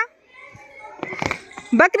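Children's voices with a short dull thud about a second in, then a woman calls out a word near the end.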